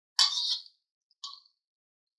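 A spoon scraping beaten egg out of a bowl: a half-second scrape, then a brief light tap just over a second in.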